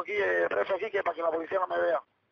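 Speech only: a voice talking quietly over a telephone line, the words not made out.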